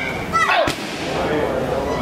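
One sharp, cracking strike landing on a Muay Thai pad about two-thirds of a second in, just after a short falling vocal grunt.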